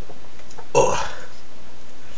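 A man's single short burp about three-quarters of a second in, just after a gulp of Mountain Dew from the can.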